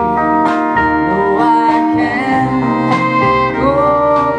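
Live country-folk band playing an instrumental passage: acoustic guitar, fiddle and steel guitar over double bass and drums, with cymbal hits about half a second and three seconds in.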